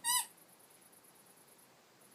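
A single short, high-pitched squeak at the very start, lasting about a quarter of a second, with its pitch rising and then dropping; then only quiet room noise.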